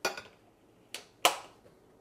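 Metal cookware clanking on the stovetop as a pot of pasta is handled: three sharp clanks with a short ring, the last and loudest a little over a second in.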